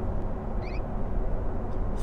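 Steady low drone of a 2016 Corvette Z06 under way, heard from inside the cabin. A faint, short double chirp sounds about two-thirds of a second in.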